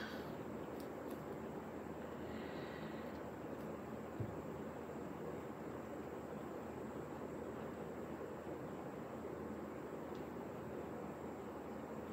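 Faint, steady room-tone hiss with one soft knock about four seconds in.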